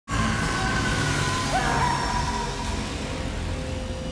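Dark horror-film score: sustained high tones with a short upward glide about a second and a half in, over a low rumble, slowly fading.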